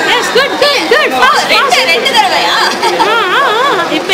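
Several high-pitched voices chattering and calling out over one another, their pitch swooping up and down.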